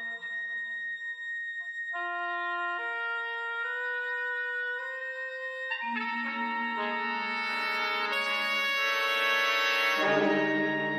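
Wind ensemble playing long held notes: one high tone sustains while other brass and woodwind notes enter one after another and step upward. About six seconds in, the lower instruments join and the full band swells louder toward the end.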